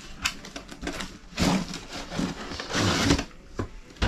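Cardboard product box being opened by hand: irregular scraping, rustling and clicking of cardboard and packaging, in several separate bursts.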